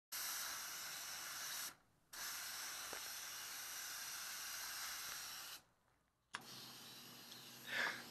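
Compressed-air gravity-feed spray gun hissing as it sprays high-build primer, in two long trigger pulls: about a second and a half, a short pause, then about three and a half seconds, each cut off cleanly when the trigger is released.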